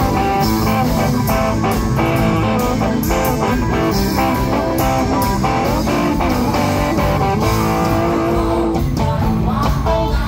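Live rock band playing loudly, with a Stratocaster-style electric guitar to the fore over the drums.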